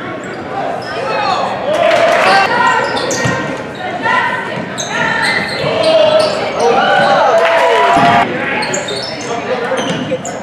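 Basketball being dribbled and bounced on a hardwood gym floor during play, with voices calling out, all echoing in a large hall.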